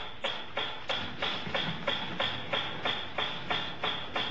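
Mechanical metronome ticking steadily at about three ticks a second: the conditioned stimulus that the dog has learned to link with the arrival of food.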